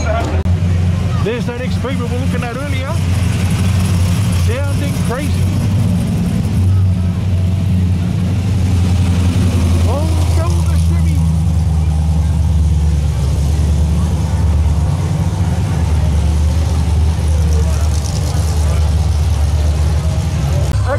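Supercharged V8 of a 1957 Chevrolet sedan rumbling steadily as it drives past in slow street traffic, with voices of people around.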